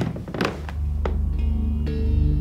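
Suspense film score: a deep thud at the start, a few lighter hits after it, then a low held drone with faint high tones coming in about halfway through.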